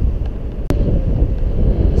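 Wind buffeting the microphone of a camera on a moving e-bike, a loud low rumble, with a single sharp click and a momentary dropout under a second in.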